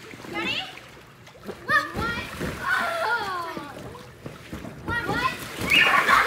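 Girls' excited high-pitched shouts and squeals over water splashing as they wrestle on inflatable pool floats. Near the end comes a louder splash as one is pushed off her float into the pool.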